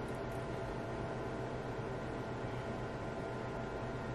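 Room tone: a low, steady hiss with a faint hum under it, with no distinct sound from the lash curling and mascara.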